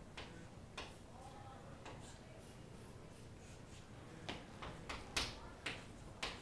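Chalk tapping and scraping on a chalkboard as formulas are written: a few short, sharp taps early on, then a quicker cluster of taps near the end, the loudest about five seconds in.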